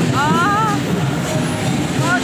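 Steady rumble of street traffic as parade trucks and cars drive past. A short wavering melodic phrase rises and bends briefly near the start.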